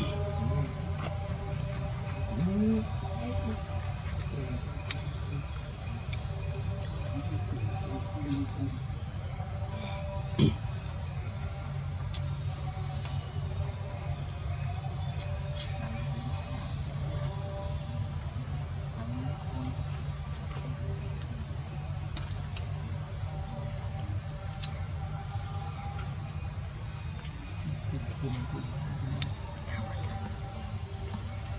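Steady, unbroken high-pitched buzzing of a forest insect chorus at two pitches, over a low rumble. There are a few short sharp clicks, about 5, 10 and 29 seconds in.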